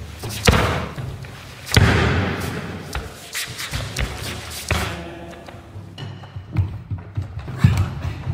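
Bodies landing heavily on foam floor mats as karate practitioners are thrown: two loud thuds about half a second and nearly two seconds in, echoing in a large hall. Smaller thumps and scuffs of falls and bare feet follow.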